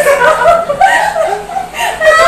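People laughing loudly, with excited voices breaking in.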